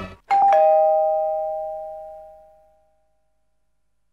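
Two-tone ding-dong doorbell chime: a higher note then a lower one a fraction of a second later, both ringing on and fading away over about two and a half seconds.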